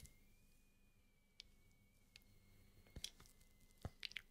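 Near silence: room tone, with three faint short clicks.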